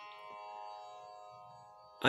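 A faint, steady musical drone accompanying the chant: one held pitch with many overtones, slowly fading away.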